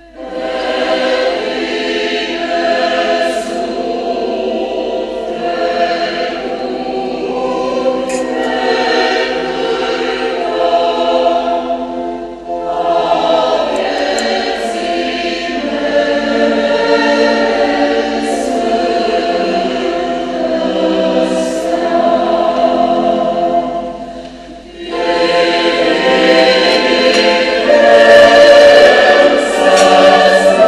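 Large mixed church choir singing a hymn in long phrases, with short breaks about twelve and twenty-four seconds in; it grows louder near the end.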